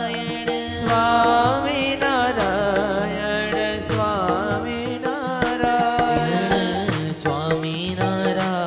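Live devotional bhajan: a man sings a slow, ornamented melody with long held notes. Harmonium chords, tabla strokes and a bansuri flute accompany him, and the tabla grows busier in the second half.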